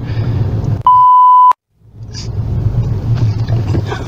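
Steady car-interior road and engine rumble, broken about a second in by a loud single-pitch bleep of just over half a second, the kind dubbed in to censor a word. It cuts off sharply into a moment of dead silence before the rumble comes back.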